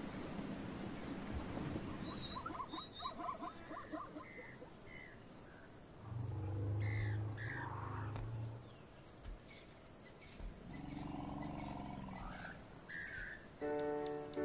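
African bush soundtrack: birds chirping, then two long, deep animal calls, the first and loudest about six seconds in and the second near the end.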